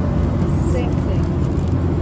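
Steady low rumble of an airliner's cabin noise in flight, engine and airflow noise with no change in level. Faint voices sound in the cabin.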